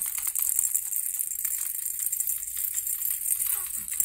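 Baby's plastic ball rattle shaken steadily, a continuous fast rattling of small beads inside.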